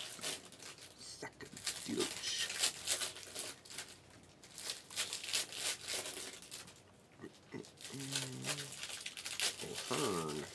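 Foil trading-card pack wrappers crinkling and rustling as they are handled, a run of short, irregular crackles.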